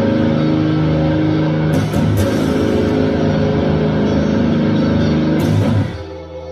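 Schecter Hellraiser C-7 seven-string electric guitar, played through a Boss ME-80 multi-effects unit, sounding long, sustained metal chords. The playing breaks off briefly about two seconds in and drops away sharply just before the end.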